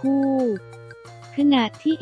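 A male voice narrating in Thai, with a drawn-out falling syllable at the start and a short phrase near the end, over quiet background music with a steady bass line that carries on alone in the pause between.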